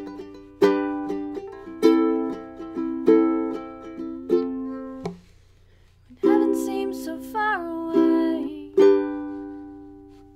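Ukulele strummed chords, each ringing out and fading, about one strong strum a second. A short break comes about halfway through, then the strumming picks up again and fades near the end.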